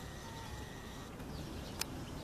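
Faint outdoor background noise with a low rumble, a brief faint whistle-like note a fraction of a second in, and a single sharp click near the end.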